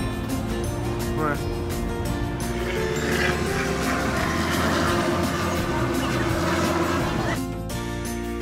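Background music with vocals.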